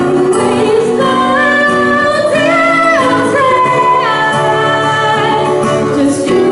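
Live acoustic guitar accompanying a female singer and a second vocalist, who hold long sustained notes that step from pitch to pitch.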